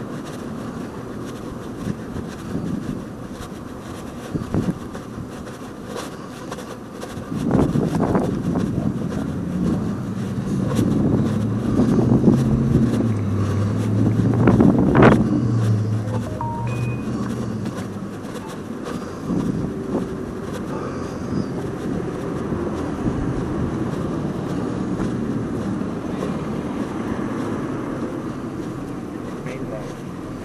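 A motor vehicle's engine passing on the street, building to its loudest about halfway through and then fading, over steady street noise.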